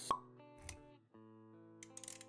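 Motion-graphics intro sound effects over soft sustained background music. A sharp pop comes just after the start and is the loudest sound; a softer pop follows a little over half a second in, then the music notes drop out briefly and come back.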